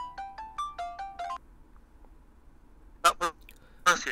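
Phone call ringing melody: a quick tune of electronic notes, several a second, that stops about a second and a half in as the call is picked up. A short burst of voice follows near the end.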